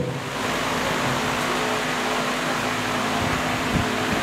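A steady, fairly loud hiss with a faint low hum under it, starting suddenly as the speech breaks off.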